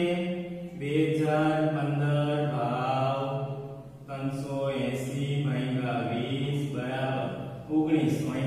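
A man's voice speaking in long, drawn-out, chant-like syllables held on fairly steady pitches, broken by short pauses about a second in and about four seconds in.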